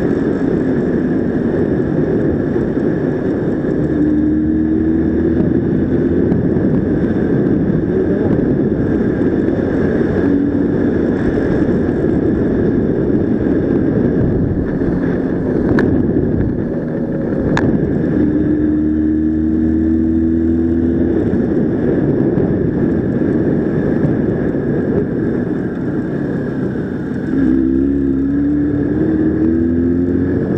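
Jawa motorcycle engine running on the move, under heavy wind noise on the microphone. Its pitch climbs slowly three times as it pulls up to speed: about four seconds in, around the middle, and again near the end after a brief lift off the throttle.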